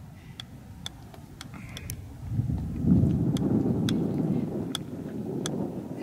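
Light, sharp clicks of a golf ball bouncing on a golf club's face, roughly one or two a second. From about two seconds in, a louder low rumble builds up under the clicks.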